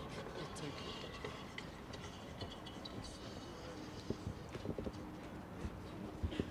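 Low, indistinct chatter of people's voices with a few soft knocks and clicks, like a microphone or objects being handled.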